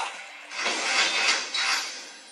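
A splashy, hissing sound effect from the show's soundtrack, heard through a television speaker: it swells about half a second in and fades away near the end.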